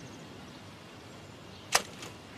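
One sharp crack of a bullet sound effect, very short and loud, near the end, over a steady faint forest background.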